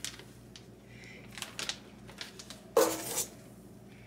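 A metal spoon scraping and clinking in a stainless steel mixing bowl as soft meringue batter is scooped out, with a few light clicks and a brief louder noise about three seconds in.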